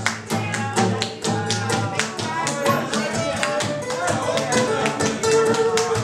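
Two acoustic guitars playing blues together, picked and strummed with quick, sharp, percussive strokes.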